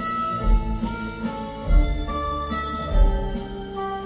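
Live band playing a slow instrumental passage: held chords over a deep beat that lands about every second and a quarter.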